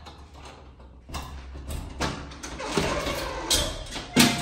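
The lock of a front door being worked from outside: clicks and scraping of the key and bolt mechanism starting about a second in, as the door is unlocked.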